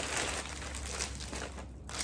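Clear plastic bag of Halloween garland crinkling as it is picked up and handled.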